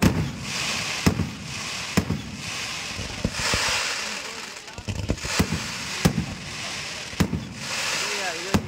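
Fireworks display: aerial shells and fans of rising comets launching and bursting. Sharp bangs come about once a second over a continuous crackling hiss.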